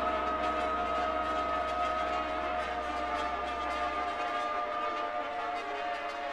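Modern classical chamber ensemble music: two long held notes, one high and one lower, sustained over a low drone that stops about four seconds in.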